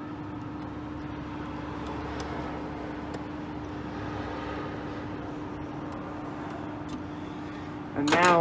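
Steady mechanical hum with one constant low tone, and a few faint clicks as a small screwdriver tightens a terminal screw.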